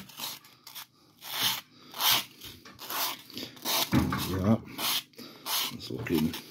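An emery board rasping against the cut edge of an XPS foam disc in irregular strokes, about one or two a second, rounding it into a smoother circle. Around four seconds in, a short low voice sound is heard under the strokes.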